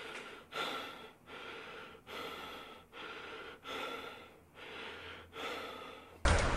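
A person breathing hard in quick, rhythmic gasps, about one breath every three-quarters of a second, as with strain during a set on a weight machine.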